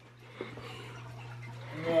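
A steady low hum throughout, with a small tick about half a second in.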